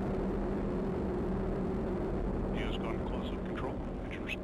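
Atlas V rocket in powered ascent, its RD-180 main engine and four solid rocket boosters running as a steady, rumbling noise. Faint voice chatter joins from about two and a half seconds in.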